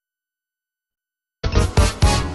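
Dead silence, then a television programme's ident jingle starts suddenly about a second and a half in, loud music with several held tones.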